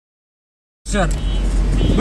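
Silence for nearly the first second, then the steady low running and road noise of a moving Tofaş 1.6 SLX saloon heard from inside the cabin, with a man's voice starting over it.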